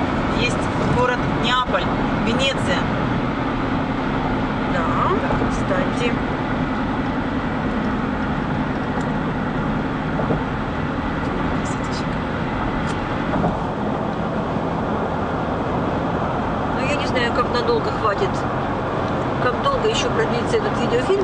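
Steady road and tyre noise of a car cruising at highway speed, heard from inside the cabin, with low talk at the start and again near the end.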